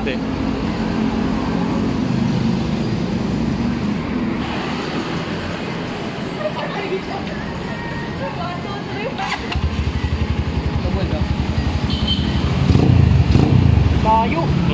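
A motorcycle engine running close by with a steady low hum. About two-thirds of the way through, its rapid firing pulse gets louder.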